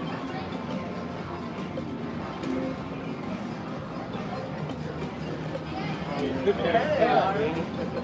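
Jeopardy stepper-reel slot machine spinning its reels during a paid spin, over a steady background of casino-floor machine sounds and chatter. Near the end comes a louder warbling, rising-and-falling electronic tone.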